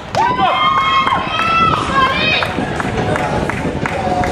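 Excited high-pitched shouting and cheering from several people as a goal is scored, loudest in the first two and a half seconds, followed by a few sharp clicks over steady outdoor noise.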